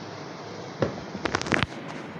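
A single sharp knock about a second in, followed by a quick cluster of crackling clicks and knocks lasting about half a second, over low steady room noise.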